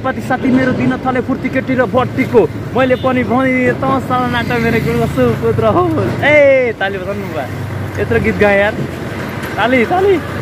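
Men's voices close to the microphone, over a low hum of road traffic.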